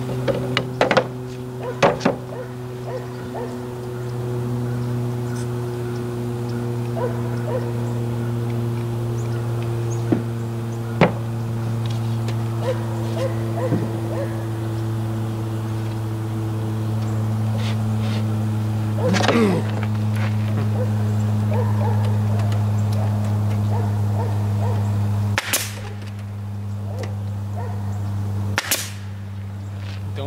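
Pneumatic nail gun firing single shots into the wooden box: sharp cracks about one and two seconds in, another around eleven seconds, and two more near the end. A steady low hum runs underneath throughout.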